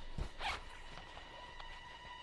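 A soft thump, then a short swish of jacket fabric, like a zip or a hand going into a pocket. From about a second in, faint steady high tones of the film's score come in.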